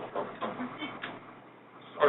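A man's voice speaking softly and trailing off, with a short click about a second in, then a brief pause with little more than room tone.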